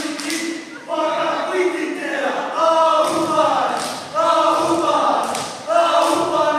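A group of men's voices chanting a Māori haka in unison: four loud shouted phrases, a new one about every second and a half, with sharp thuds among them.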